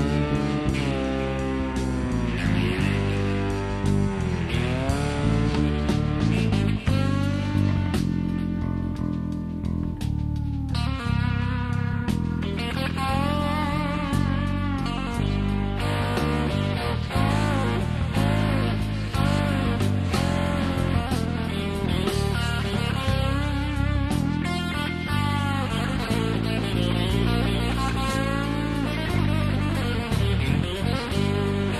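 Country rock band playing an instrumental break between verses: a lead guitar with bending notes over a bass and drum backing.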